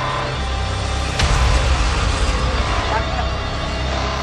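Motorcycle engine running with a deep rumble that gets suddenly louder about a second in.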